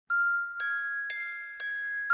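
Background music: a chiming, bell-like melody with a note struck every half second, each note ringing on into the next.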